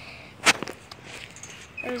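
A single sharp click about a quarter of the way in, followed by a few fainter clicks; a man's voice starts near the end.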